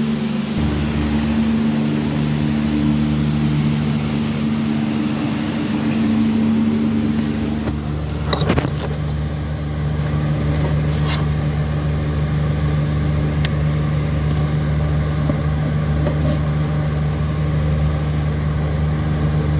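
A steady low motor hum with a few clicks; the loudest is a short knock about eight and a half seconds in.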